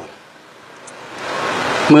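A rushing noise that swells steadily over about a second and a half and stops as speech resumes.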